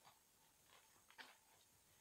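Near silence with a few faint clicks of plastic Lego bricks being handled and pressed together, the sharpest a little after one second in.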